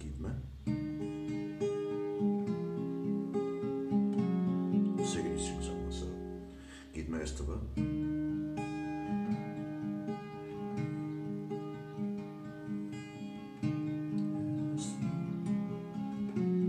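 Acoustic guitar capoed at the sixth fret, its notes picked one after another and left ringing over each other in a melodic pattern, with a brief break a little before the middle.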